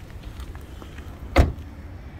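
The rear passenger door of a 2017 Vauxhall Viva hatchback being shut: a single thump about one and a half seconds in.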